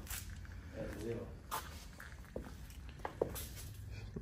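A faint voice speaking briefly about a second in, with a few light clicks and knocks over a low steady hum.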